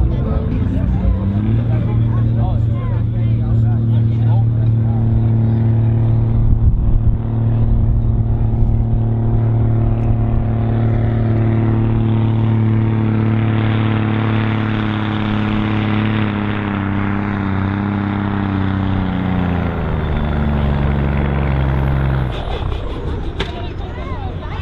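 Scania 114G truck's 340 hp diesel pulling the sledge under full load: a steady deep drone that sags and falls in pitch from about 17 to 20 s in as the engine is dragged down by the sledge, then the throttle comes off near the end.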